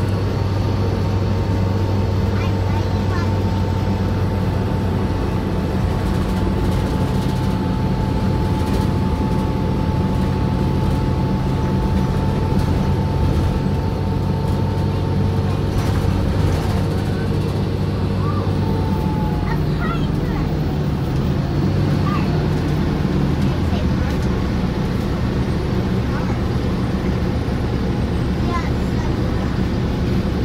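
2008 New Flyer city bus engine and drivetrain running under way, heard from inside the passenger cabin: a steady low drone with a thin whine above it. The whine dies away with a slight drop in pitch about two-thirds of the way through, and the drone's pitch shifts, as the bus changes speed.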